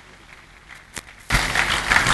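A quiet hall with one sharp click, then about a second and a half in, a sudden burst of audience applause that carries on past the end.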